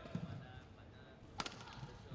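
A single sharp crack about one and a half seconds in, after a brief squeak at the start, over faint background noise in a sports hall.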